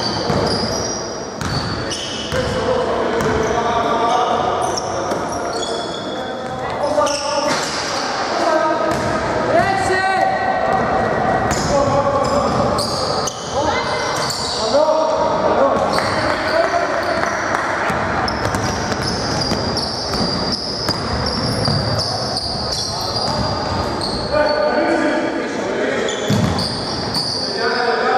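Basketball game on a hardwood gym court: a ball bouncing on the floor, high sneaker squeaks and players calling out, echoing in the hall.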